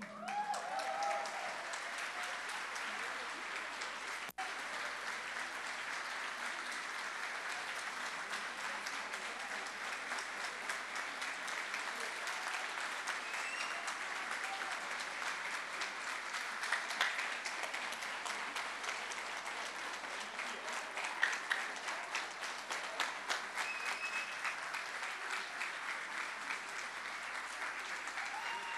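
Audience applauding steadily, with a brief dropout about four seconds in.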